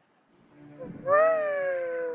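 A young child's long, high-pitched vocal exclamation, like a drawn-out 'wooow', starting about a second in with a quick upward slide and then sinking slowly in pitch for about a second.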